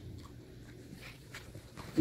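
Puppy chewing a treat: a few faint, short crunching clicks.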